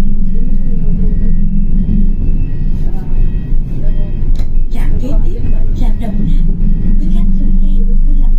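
City bus engine running with a steady low hum, heard from inside the cabin as the bus drives along. Indistinct voices come in about halfway through.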